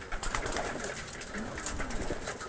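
Domestic pigeons cooing in their loft: one low, arching coo about one and a half seconds in, over light scattered clicks.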